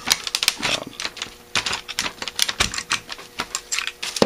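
A quick, irregular run of light metallic clicks and taps as a screwdriver and the body of a Holley 1904 one-barrel carburetor are handled against each other.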